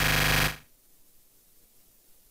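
The tail of background music, a held chord, dying away about half a second in, then silence.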